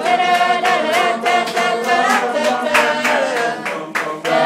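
A steel band singing through its parts without instruments: a group of voices holding and sliding between notes together, over sharp handclaps keeping a steady beat of about three a second.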